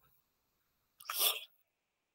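A man's single short, explosive burst of breath, a cough or sneeze, about a second in and lasting under half a second.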